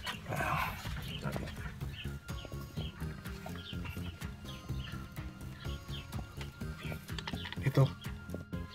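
Rustling and scraping as a hand gropes into a crevice in a wooden barn wall to pull out a pigeon squab, with many short high bird chirps throughout.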